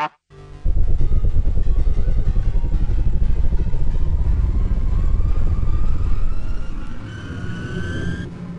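A loud, low rumbling sound effect that starts suddenly about half a second in and holds steady, with a faint rising whine joining in the last few seconds.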